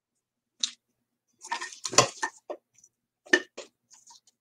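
Craft supplies and containers being handled and set down on a work table: a run of clicks and clattering knocks, the loudest about halfway through.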